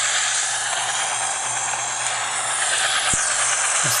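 A steady, even hiss of recording noise, with a brief low click about three seconds in.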